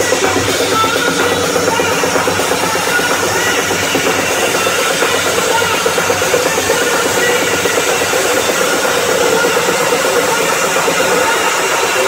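Loud electronic dance music from a DJ set played over a festival sound system, heard from among the crowd.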